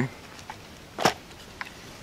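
A single sharp knock about a second in, with a few faint clicks around it: handling noise as gear is moved about on a wooden table.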